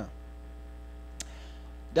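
Steady electrical mains hum from a microphone and PA system during a pause in speech, with one small click a little past halfway.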